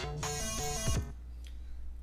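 Electronic track's bass-line section playing back from a DAW, dry, with the granulizer plugin's mix turned off; playback stops about a second in, leaving only a low hum.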